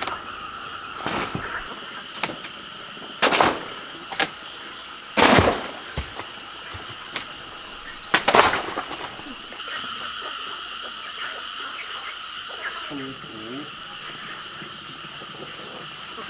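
A steady, high-pitched outdoor chorus of calling insects runs throughout. It is broken in the first half by several short, loud, rough bursts of noise, the loudest about five and eight seconds in.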